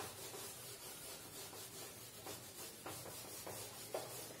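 Whiteboard eraser wiped across a whiteboard: a faint, steady rubbing with several distinct back-and-forth strokes in the second half.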